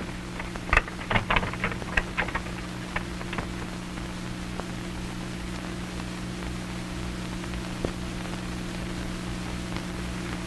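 Steady hum and hiss of an early film soundtrack, with a scatter of light clicks and knocks in the first few seconds.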